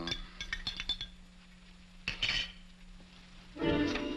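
A metal spoon stirring a drink and clinking several times quickly against a drinking glass in the first second, then a short noisy sound about two seconds in. Film-score music comes in near the end.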